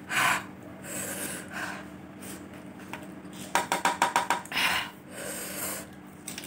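Close-miked breathing and mouth sounds of a person eating very spicy noodles: a sharp breath at the start, more breaths later, and a fast run of wet mouth clicks about halfway through.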